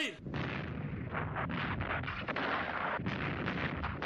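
Battle sound effect: a short rising-and-falling whistle right at the start, then a dense, continuous crackle of rapid massed gunfire.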